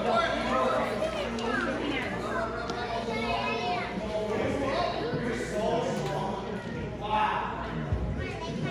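Indistinct chatter of children's and adults' voices overlapping in a large gym hall.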